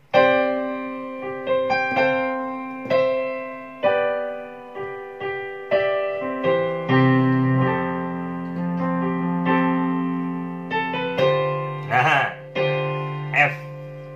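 Keyboard piano played chord by chord: sus2 and sus4 voicings in the right hand over low bass notes in the left, each chord struck and left to ring, about one a second.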